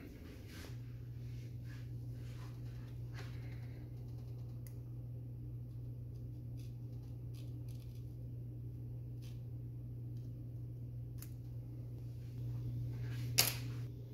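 Faint handling sounds from a plastic gun housing being worked by gloved hands while tape is fitted: scattered small clicks and taps over a steady low hum. There is one sharper click near the end.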